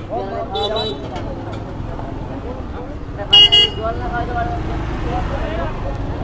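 Busy street-market din with people talking over a steady low traffic background. A horn gives two short toots about three and a half seconds in, the loudest sound.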